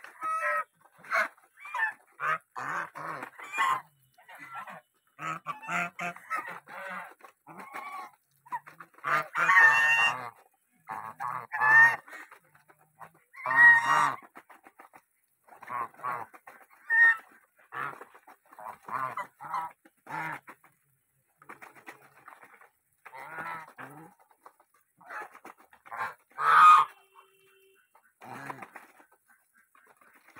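Domestic geese honking in short, irregular bursts of calls while feeding together from a bowl of grain, with brief lulls between; the loudest calls come about ten, fourteen and twenty-six seconds in.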